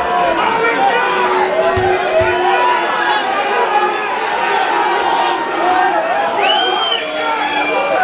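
Crowd of spectators in a hall chatting, many voices talking over one another. About six and a half seconds in, a brief high-pitched call rises and falls above the chatter.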